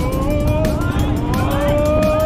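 Jet boat running at speed, a dense rushing of engine and water, under a music track with a beat. Two long, slowly rising tones sound over it, the second about a second in.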